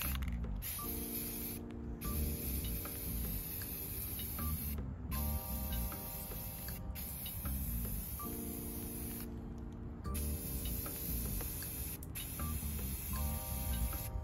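Aerosol can of Rust-Oleum gloss spray paint hissing as it is sprayed, in several long sprays of a few seconds each, broken by brief pauses.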